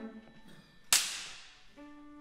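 A single sharp percussion crack about a second in, ringing on in the hall's reverberation. Low instrument tones fade out at the start, and a low held note begins near the end.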